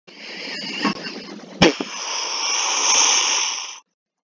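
A rushing, hissy whoosh sound effect with a sharp crack about one and a half seconds in. It swells louder and then cuts off suddenly near the end.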